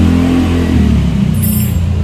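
Vehicle engine idling steadily, its tone shifting slightly about three quarters of a second in.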